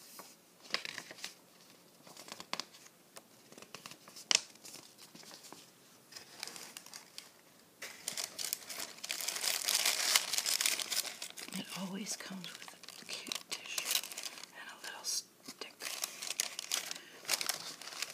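Tissue paper and a cardboard gift box being handled and opened, the paper rustling and crinkling. The first half holds scattered light handling sounds and one sharp click about four seconds in; from about eight seconds in the crinkling is dense and continuous as the tissue is lifted and unfolded.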